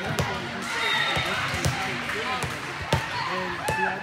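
Busy volleyball hall: many overlapping voices calling and chattering, with frequent sharp smacks of volleyballs being hit and bouncing on the courts, the loudest about three seconds in.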